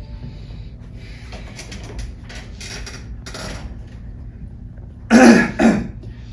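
Quiet room tone, then a person loudly clears their throat in two short bursts about five seconds in, as if to call for attention.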